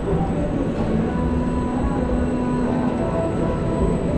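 Tower plane ride in motion: a steady rumble of its machinery and wind on the rider's camera, with faint humming tones coming and going.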